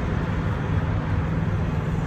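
Steady low rumble of idling diesel semi-truck engines.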